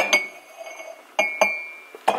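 Ceramic mugs clinking together on a cupboard shelf as one is lifted out: two pairs of quick clinks, near the start and just after a second in, each leaving a short ringing tone.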